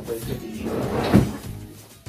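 A single sharp knock a little over a second in, like a cupboard door or a piece of furniture being shut or set down hard, over background music.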